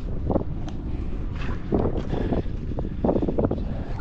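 Wind buffeting the microphone, with a few irregular footsteps squelching through wet, waterlogged mud.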